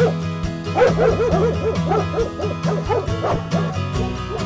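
Theme music with a steady beat, with a dog barking in a quick run of short barks, about five a second, from about a second in.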